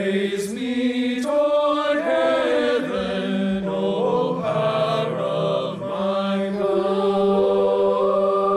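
A high-school select choir singing a slow piece in held chords, ending on a long sustained chord. It is a virtual-choir performance, pieced together from remotely recorded voices.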